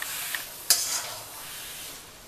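A spatula stirring and scraping grated carrot halwa around a kadhai, the halwa sizzling as it is roasted in ghee and khoya. One scrape a little before a second in is louder and sharper than the rest.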